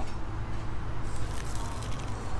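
Crisp fried taco shell crunching as it is bitten, with a few crackles about a second in, over a steady low rumble.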